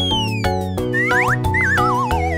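Instrumental children's music with cartoon sound effects laid over it. A pitch glide rises and then falls in a long slide over the first second, a quick one rises after it, and a wavering one falls near the end.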